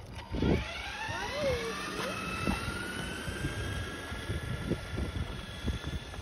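Electric motor whine of a red RC monster truck, its pitch climbing gradually as the truck speeds away across the asphalt, over a low rumbling hiss of tyres and wind.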